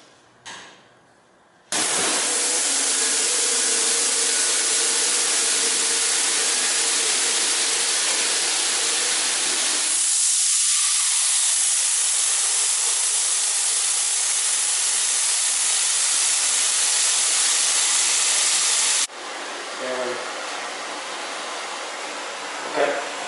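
SPA FireSense+ sprint-car fire suppression system, triggered automatically, discharging 4Fire Universal agent through its nozzle onto a burning methanol pan fire and putting it out. It is a loud, steady hiss of spray that starts about two seconds in. The hiss lasts about seventeen seconds, its lower part drops away about halfway, and it cuts off suddenly near the end.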